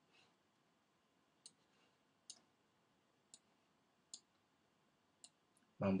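Faint, sharp clicks of a computer mouse, about six of them roughly a second apart.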